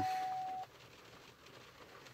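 A single steady high-pitched tone that cuts off suddenly just over half a second in, followed by near silence.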